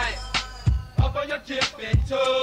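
Memphis underground rap track from 1997: a drum-machine beat of kick drums and hi-hat ticks under a pitched, wavering vocal line.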